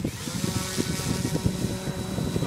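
Radio-controlled model airplane's motor spinning up to a steady high whine at full throttle as the plane rolls across grass for takeoff.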